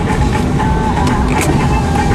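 Car cabin noise while driving: a steady low rumble of road and engine, with a thin held tone that wavers slightly over it.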